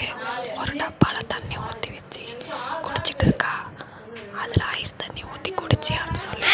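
A person speaking softly in a whisper, broken by a few sharp clicks.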